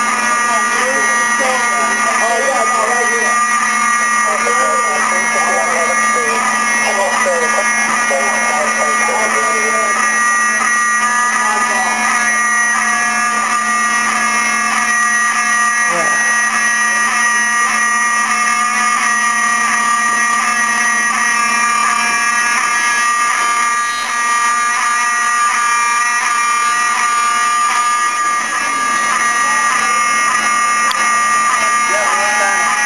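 Building fire alarm sounding continuously with a steady, unbroken buzzing tone, set off by smoke from food burning on a stove.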